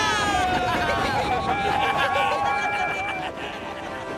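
A group of cartoon steam locomotives cheering together and blowing their steam whistles, several held whistle tones sounding at once, fading away near the end.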